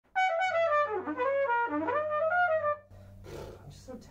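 A trumpet playing a quick, agile run of notes that moves down and up for about two and a half seconds, then stops. A steady low hum sits underneath.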